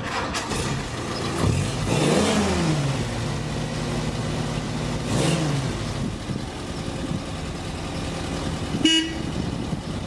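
1944 Willys MB jeep's 2.2-litre four-cylinder engine running at idle, revved up and back down twice. A short horn toot near the end.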